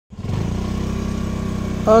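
A vehicle engine idling steadily, with an even low pulsing, starting just after the opening; a man says "oke" at the very end.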